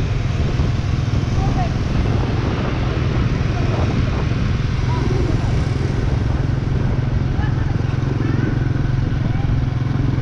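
Motorbike engine running steadily while riding along a city street, with a continuous rush of wind and road noise over the microphone.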